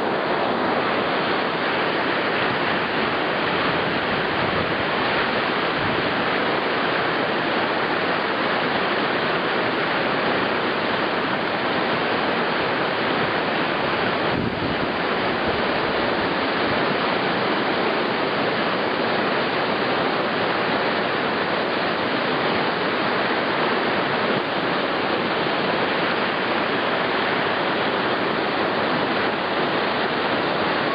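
Whitewater rapids: a big river rushing and churning over rocks, a dense, steady water noise with no letup.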